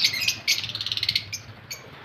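Lovebirds chattering in quick, high chirps that die down over the second half.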